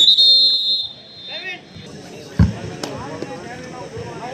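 A whistle blown once: a shrill, steady blast that is loudest in its first second and dies away before two seconds. A single thump follows about two and a half seconds in, among crowd voices.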